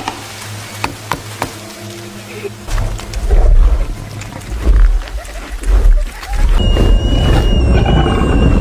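Movie sound mix: tense, low orchestral music with a few sharp clicks of a dinosaur's claws on the floor. After about three seconds come deep low rumbles, and near the end the music swells.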